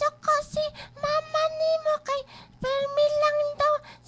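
A high voice, child-like, singing short phrases on a nearly steady pitch, ending in one long held note near the end.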